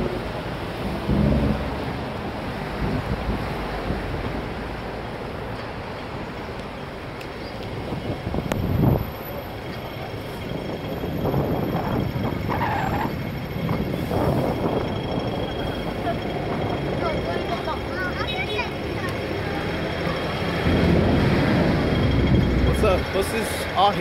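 Road traffic: cars and double-decker buses running past with a steady low engine rumble, growing louder near the end as buses pull up close by.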